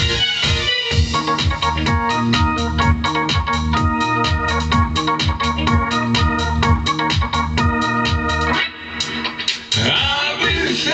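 Electronic keyboard music: held chords and a bass line over a steady drum-machine beat. The beat drops out and the music dips in level for about a second near the end, then comes back.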